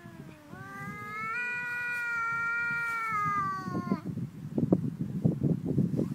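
Two domestic cats yowling at each other in a standoff: a lower yowl slides slowly downward while a higher, long drawn-out yowl rises and holds, both stopping about four seconds in. Uneven low noise follows for the last two seconds.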